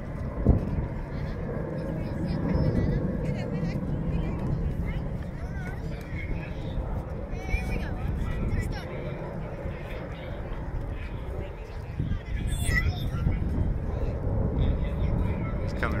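Low, steady rumble of distant F/A-18 Hornet jets in flight, with faint voices of people in the background. A single sharp knock comes about half a second in.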